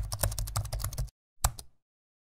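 Computer keyboard typing sound effect: a fast run of keystrokes, about a dozen a second, stopping a little past a second in, then one louder final keystroke.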